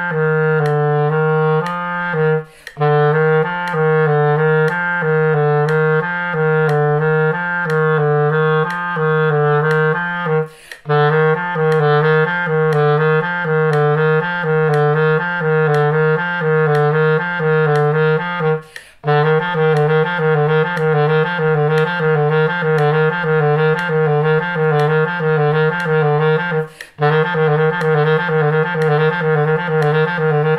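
Clarinet playing a repeated low-register E–F–G little-finger exercise, with E on the right pinky key and F on the left, in even notes that quicken in the last third. It breaks for a short breath about every eight seconds.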